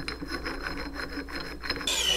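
Steel clutch parts being fitted by hand: the adjustment nut and pressure plate scraping and clicking on the clutch hub as they are threaded together. A louder hiss comes in just before the end.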